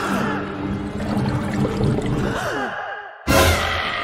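Cartoon character voices sighing and moaning in wavering, falling glides over background music. Just after three seconds everything cuts out briefly, then a sudden loud low blast starts.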